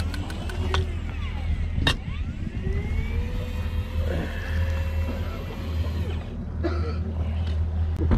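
Shimano Forcemaster 4000 electric fishing reel whining as its motor winds a hooked grouper up to the surface, the pitch gliding up and down. There is one sharp click about two seconds in, over a steady low rumble.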